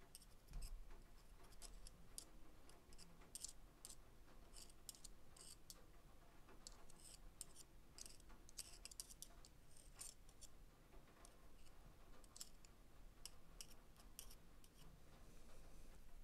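Faint, irregular light clicks and scratches as a small grease brush dabs lubricant onto the steel axles of a cordless drill's planetary gearbox carrier.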